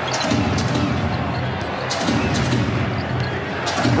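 A basketball being dribbled on a hardwood court over steady arena crowd noise, with a few short sharp sounds from the ball and the players' shoes.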